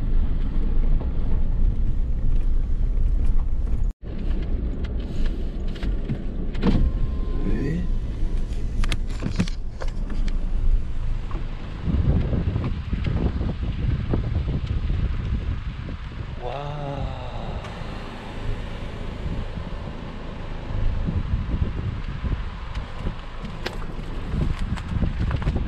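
Suzuki JB64 Jimny driving on a gravel forest road, a steady low rumble of engine and tyres heard inside the cabin. It cuts off suddenly about four seconds in, and uneven outdoor noise with scattered knocks follows.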